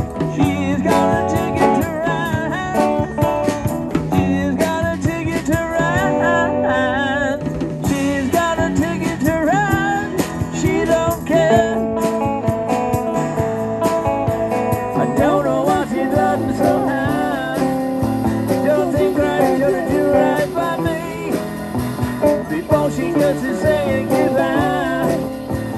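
Live rock band music: electric and acoustic guitars with a drum kit, played through small amplifiers, with some singing.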